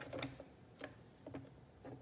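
A few faint, irregular clicks and taps of plastic drafting instruments, a set square and a drafting-machine ruler, being slid and set down on a drawing board.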